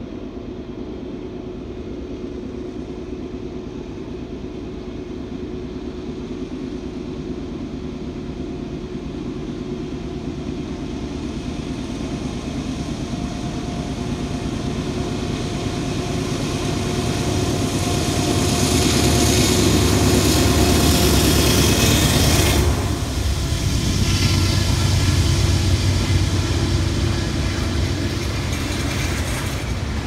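Diesel freight locomotive working hard under load as it approaches, its engine growing steadily louder. About 23 seconds in, the engine sound drops off suddenly as the locomotive passes below. A low rumble of double-stack container cars rolling by follows.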